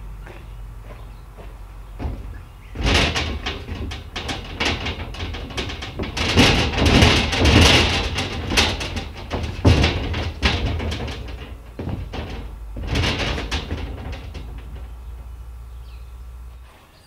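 Thin aluminium sheet deck resting on timber, flexing, rattling and banging under a man's footsteps as he steps onto it and shifts his weight, in a run of irregular bursts that is loudest near the middle. A steady low rumble lies underneath.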